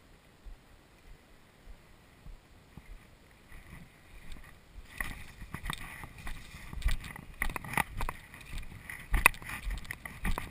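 Footsteps and rustling as someone pushes through low weedy undergrowth. It is quiet at first, then from about halfway there are irregular crunches, swishes and knocks of feet and body brushing through the plants.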